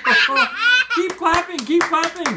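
A young child laughing in repeated high-pitched bursts, with hand claps starting near the end.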